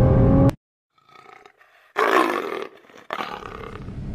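Nissan GT-R's twin-turbo V6 heard from inside the cabin at high revs, cut off abruptly about half a second in. After a second of near silence comes a loud, roar-like burst lasting under a second, followed by quieter noise.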